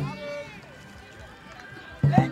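A short knock, then one drawn-out shout lasting about half a second, followed by a low murmur of voices.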